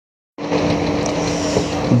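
A steady engine hum over an even rushing noise, starting suddenly about a third of a second in: a motor vehicle running close by.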